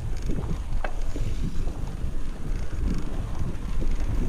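Wind buffeting an action camera's microphone over the rumble of mountain bike tyres rolling on a grassy dirt track, with a few short rattles and clicks from the bike.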